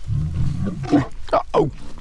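Male African lion growling low at a lioness, a rumbling warning to keep her distance that lasts about a second, followed by a few shorter vocal sounds.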